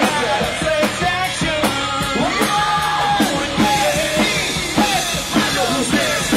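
Live rock band playing: a singer over electric guitars and a drum kit, with a steady drum beat.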